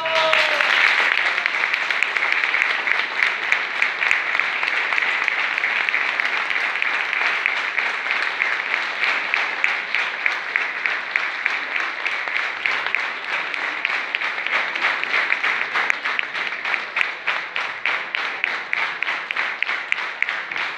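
Audience applauding a wind band just after its last chord dies away. The applause is dense, and individual claps stand out more clearly toward the end.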